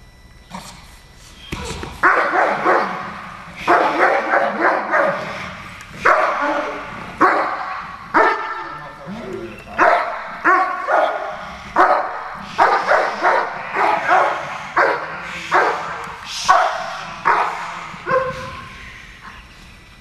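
German Shepherd protection dog barking repeatedly on leash at a decoy, guard barking of protection work, starting about two seconds in and running at roughly one to two barks a second before tailing off near the end.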